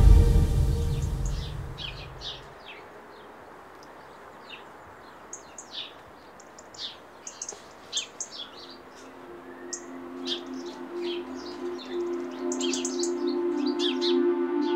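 Small birds chirping in short, scattered calls over a faint background hiss. Music fades out in the first couple of seconds, and soft music with long held notes comes back in from about the middle and grows louder toward the end.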